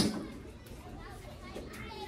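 A sharp click, then children's voices chattering faintly in the background.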